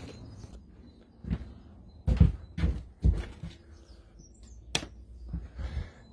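Dull thumps of footsteps on a boarded timber floor, several irregular steps about half a second apart, with a faint bird chirp midway.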